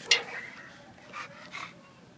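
Short sounds from a dog in a kennel: a sharp one just after the start, then two fainter ones a little after one second and at about one and a half seconds.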